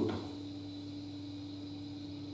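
Room tone: a steady low electrical hum with no other sound.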